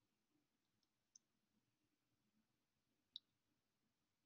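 Near silence broken by two faint, sharp computer mouse clicks, one about a second in and a louder one about three seconds in.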